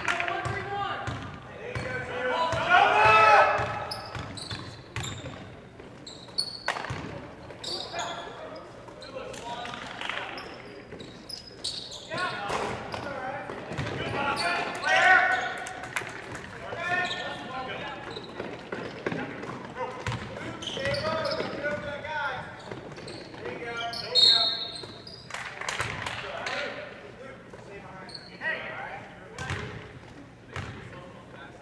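A basketball being dribbled and bounced on a hardwood gym floor, heard as scattered short thuds, under indistinct shouting from players, coaches and spectators.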